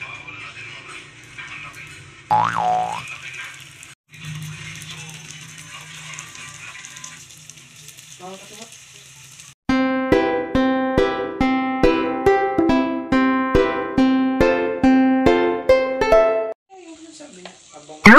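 Lumpia spring rolls frying in oil in a pan, a quiet steady sizzle, with a cartoon 'boing' sound effect about two seconds in. From about halfway through, a loud background melody of quick, evenly spaced notes plays for about seven seconds and then stops.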